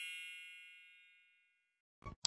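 A single bright, bell-like chime ringing out and fading away, gone by about a second and a half in.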